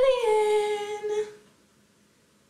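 A woman calling out through cupped hands in one long, drawn-out sung call of "aliens!", held on a slowly falling pitch and ending about a second and a half in.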